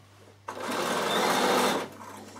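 Bernina sewing machine stitching a seam through the layers of a fabric bag in one short run, starting about half a second in and stopping about a second and a half later.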